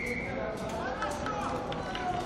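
Background voices of spectators talking among themselves, with a short, steady high-pitched tone at the very start.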